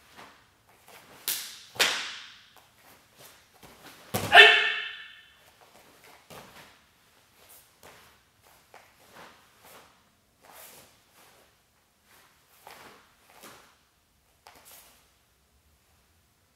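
Martial arts uniform snapping and swishing with sharp hand techniques, two loud snaps about a second and a half in. About four seconds in comes the loudest sound: a short shouted kiai over a thump. After that come fainter snaps of the sleeves with each move.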